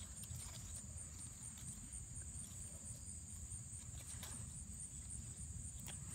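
Faint, steady high-pitched trilling of insects, with a low rumble and a few soft rustles of strawberry leaves being handled.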